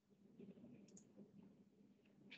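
Near silence, with a few faint, short clicks around a second in.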